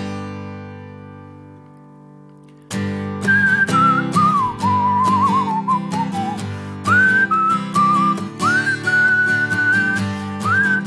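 A guitar chord is struck once and rings out, fading. About three seconds in, rhythmic strumming begins, and a whistled melody slides up and down over it.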